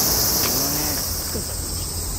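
A steady, high-pitched chorus of crickets and other insects calling together, with no single caller standing out.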